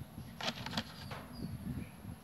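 Plastic milk jug being handled and its cap fiddled with: a few faint clicks and crinkles of plastic, mostly in the first second.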